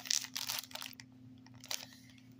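Plastic produce bag of celery crinkling as a hand handles it: a cluster of short rustles in the first second, then a faint rustle or two near the end.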